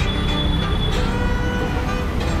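Small metal bowl scraping in circles across a flat iron dosa griddle as batter is spread, giving thin steady squeals that change pitch about a second in, over a low rumble.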